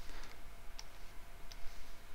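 Two light clicks from a computer pointing device used to write on the screen, the first just under a second in and the second about three-quarters of a second later, over a steady low background hiss.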